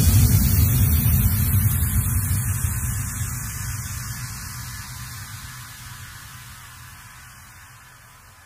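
The tail of a bass-heavy DJ remix track after the beat has stopped. A deep bass rumble with a hiss on top fades steadily away, with no rhythm left.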